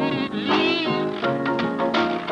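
Soundtrack music: a steady instrumental accompaniment with a high, wavering note standing out near the start.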